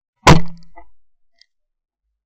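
A single shot from a 12-bore Davide Pedersoli La Bohemienne side-by-side hammer shotgun, heard at close range from a gun-mounted camera: one sharp, very loud report that fades over about half a second. A faint tick follows about a second later.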